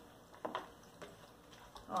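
Silicone spatula stirring seasoned raw chicken pieces in a plastic bowl: a soft knock about half a second in and a fainter one about a second in, otherwise faint.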